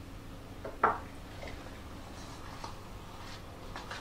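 Quiet room with a low steady hum, broken by one sharp clink of kitchenware about a second in and a few faint taps later, as spoon and bowls are handled while mixing cake batter.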